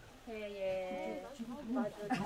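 People's voices: a drawn-out vowel-like call held for most of a second, then short bits of talk near the end.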